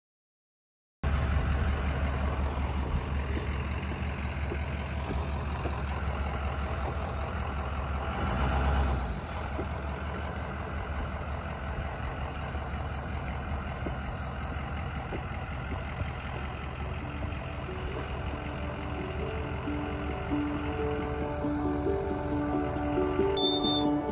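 Short school bus engine running with a steady low rumble, swelling briefly about eight seconds in. Music with held notes fades in over the last several seconds.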